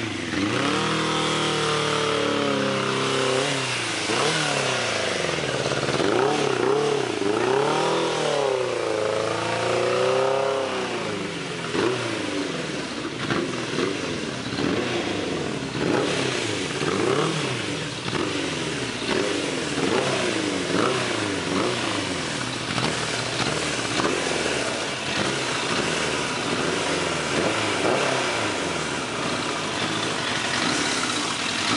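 1992 Suzuki Katana 600's four-cylinder engine, running again on rebuilt carburettors, revving up and down over and over, its pitch rising and falling every second or two, with smaller rises and falls later on.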